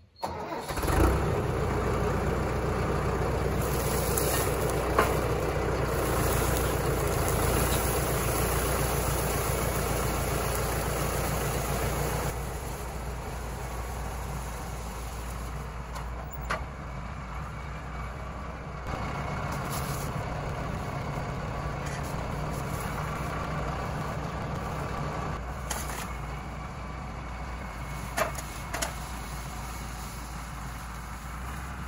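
Compact tractor's diesel engine running steadily as it drags a chained log over the forest floor, with a few sharp clicks. The engine grows quieter about twelve seconds in as the tractor moves away.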